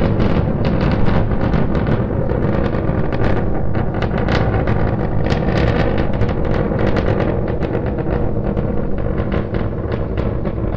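Starship SN9's three Raptor rocket engines firing during ascent, heard from the ground as a steady, loud low rumble with dense, irregular crackling.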